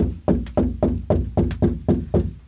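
A rapid, even series of hard knocks, about four a second, each with a short low ring.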